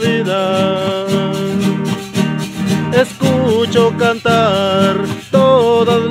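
Acoustic guitar strummed in rhythm with a metal güiro scraped alongside it, and a melody that slides between notes carried over them.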